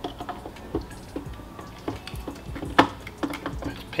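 Clicks and light knocks of a Nikon TS100 microscope's viewing head being handled and seated onto the stand, the sharpest knock about three-quarters of the way through.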